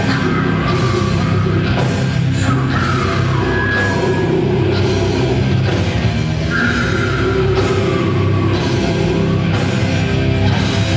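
Live heavy rock band playing loudly: distorted electric guitars, bass guitar and drum kit.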